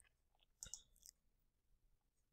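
Near silence, with a few faint short clicks a little past half a second in and again around one second.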